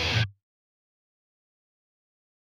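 The tail of a short music sting with a held chord cuts off abruptly about a third of a second in. Complete digital silence follows.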